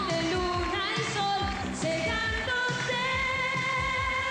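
A woman singing a Spanish-language 1980s pop song into a microphone, holding long notes over a pop backing track with a steady drum beat.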